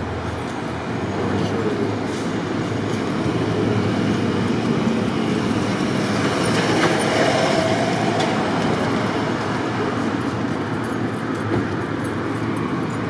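Street traffic noise, with a heavy vehicle rumbling past on the road. It swells to its loudest about midway and eases off a little near the end.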